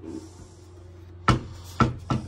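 Wooden cabinet doors pushed shut by hand, two sharp knocks about half a second apart in the second half, over a steady low hum.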